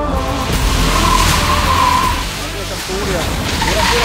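Car tyres squealing in a long steady note as a hatchback slides sideways on a wet low-grip skid pad, over background music. The squeal eases off for a moment past the middle and then returns.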